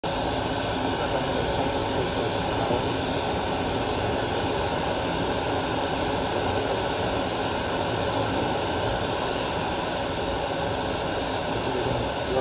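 Glassworking bench torch burning with a steady rushing noise, its flame heating a glass bottle.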